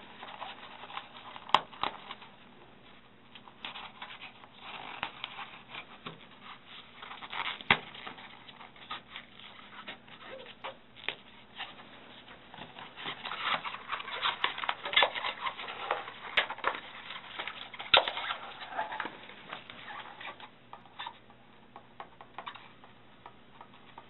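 Irregular rustling and scattered sharp clicks and knocks, like objects or paper being handled, busiest in the second half, with a few louder clicks standing out.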